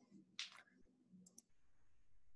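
Near silence, with one faint sharp click about half a second in and a couple of tiny ticks a little later.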